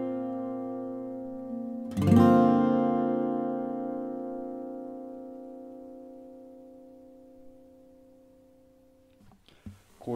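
Steel-string acoustic guitar in D A D F# B E tuning, capoed at the first fret, playing a B♭sus2-like chord already ringing, then a G minor 7-like chord strummed about two seconds in. The second chord rings and slowly dies away for about seven seconds before being damped.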